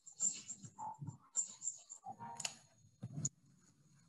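Sound from a lab video playing inside the presentation: scattered handling noises over a faint high whine, with two sharp knocks in the second half. It stops just after three seconds in.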